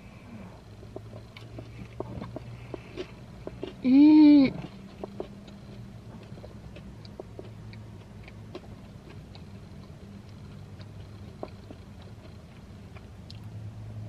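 A person chewing a crunchy cookie studded with pretzel pieces, heard as scattered small crunches and mouth clicks. About four seconds in comes a single loud, appreciative hummed "mmm". A low steady hum runs underneath.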